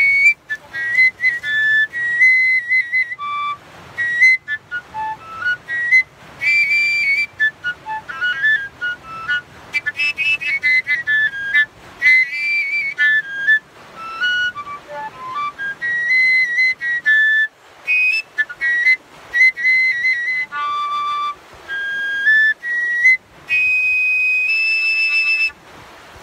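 Copper koncovka (Slovak overtone whistle, tuned to D) played loud: phrases of short, high, whistly notes that jump between overtones as breath pressure changes and a finger covers and uncovers the open end of the pipe, with a few lower notes and longer held high notes near the end.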